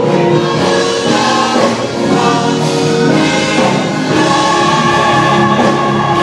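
Church choir singing a gospel song, voices holding sustained chords and moving to a new chord about four seconds in.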